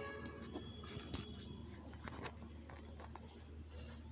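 Scissors cutting through fabric: faint, scattered snips and clicks over a steady low hum.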